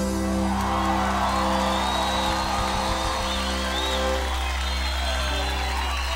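A gaúcho band's final chord, accordions and bass held steady after the rhythm stops, while a live crowd cheers and whistles.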